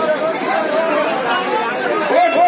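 Voices talking over one another, one of them through a handheld stage microphone, with no music playing.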